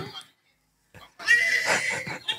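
After a short pause, a shrill, high-pitched laugh breaks out about a second in and carries on, squealing almost like a whinny.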